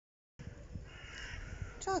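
Low wind rumble on a handheld phone's microphone, with a brief harsh call about a second in, then a woman starts speaking near the end.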